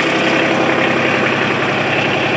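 Kubota RTV900's three-cylinder diesel engine idling steadily.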